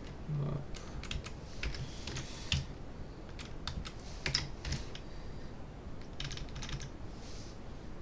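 Computer keyboard typing: keystrokes in short, irregular clusters with small pauses between them.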